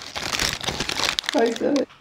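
Paper food bag crinkling and rustling as it is handled and opened, with a brief voice near the end.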